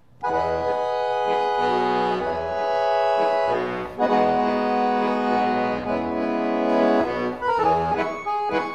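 Piano accordion played solo: held chords start a quarter-second in, break off briefly just before the four-second mark, then resume, with quicker running notes near the end.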